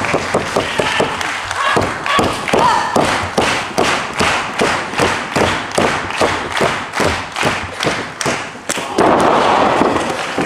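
Steady rhythm of sharp claps, about two and a half a second, starting a few seconds in, typical of an arena crowd clapping in unison at a wrestling match. A wash of crowd noise rises near the end.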